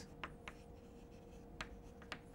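Chalk writing on a blackboard: a few faint, sparse taps and scratches as a word is written, over a faint steady hum.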